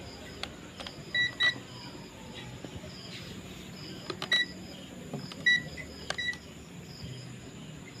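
Digital multimeter giving five short high beeps as it is switched on and set up to read AC voltage, the first two close together about a second in, with light clicks from handling the meter.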